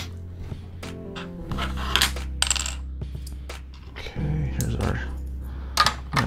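Plastic LEGO bricks clicking and clattering as they are handled and pressed together, a string of short sharp clicks. Soft background music with sustained low notes runs underneath.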